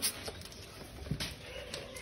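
Quiet lull: low background noise with a few faint clicks and taps, about three, spread through the two seconds.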